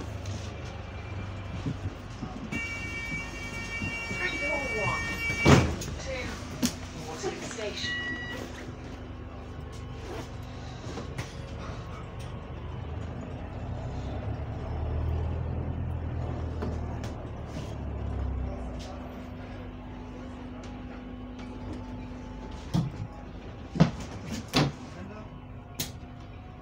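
Inside a bus: a steady high warning tone sounds for about three seconds and ends in a sharp bang as the doors shut, then the bus's engine hum swells and eases as it pulls away, with a few knocks near the end.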